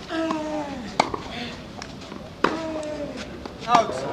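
Tennis ball struck by a racket with a sharp crack, twice, each time with a short falling grunt from the player, and another crack between them. A voice calls out near the end.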